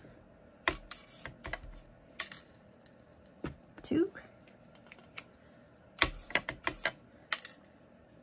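Clear acrylic stamp block with a photopolymer stamp clicking and knocking as it is inked on an ink pad, set down and pressed onto cardstock: scattered light clacks, with a quick run of them near the end.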